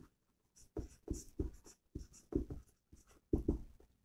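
Marker pen writing on a whiteboard: a run of short, irregular strokes as words are written out.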